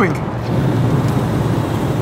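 Engine and road noise of a BMW E36 heard from inside the cabin while cruising, a steady low drone.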